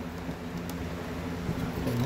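Steady low mechanical hum, with a couple of faint clicks.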